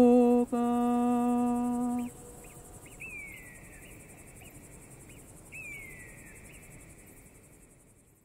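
A woman's sustained sung note, called through a wooden funnel in the alpine blessing (Alpsegen) style, holds for about two seconds with a brief break and then stops. Crickets or grasshoppers then chirr steadily in the mountain pasture, with two short falling whistle-like calls, fading toward the end.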